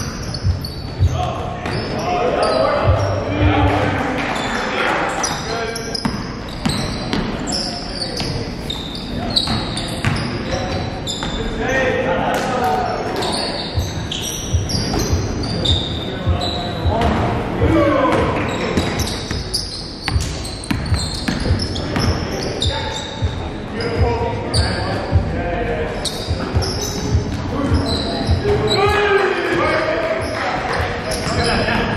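Live basketball play in a gym hall: a ball bouncing on a hardwood court, sneakers squeaking and players calling out to each other.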